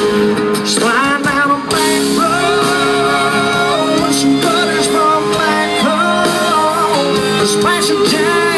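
Live country band playing through a stage PA, heard from among the audience: guitars over a steady backing, with a melody line that bends in pitch.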